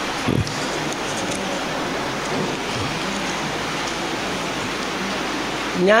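Steady, even hiss of background noise with no speech, and one soft low thump just after the start.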